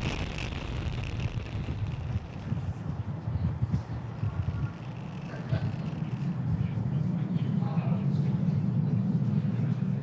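Steady low rumble of the Falcon 9 first stage's nine Merlin 1D engines during ascent, with faint voices in the background.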